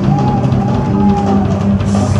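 Live blues-rock band playing: drum kit, electric bass and electric guitar, with a held lead note that bends slowly in pitch over the beat.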